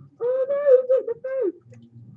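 A young man's loud yell held on one high pitch for over a second, broken twice briefly, heard as played-back video audio.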